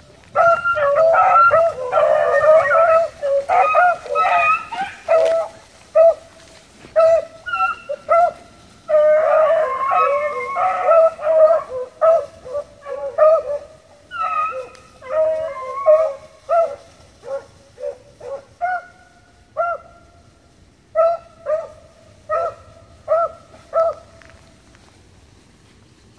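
A pack of rabbit hounds baying as they run a rabbit's trail. Several voices overlap for the first few seconds and again in the middle, then thin out to single, evenly spaced bays near the end.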